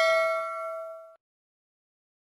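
Notification-bell ding sound effect, several bell tones ringing together and fading away, then cut off abruptly about a second in.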